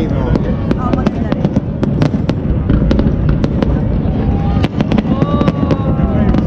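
Fireworks going off in many sharp, irregular bangs and crackles over a continuous low rumble, with people's voices around.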